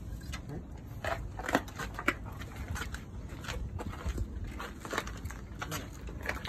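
Footsteps crunching on gravel, with scattered short clicks and rustles, over a steady low rumble.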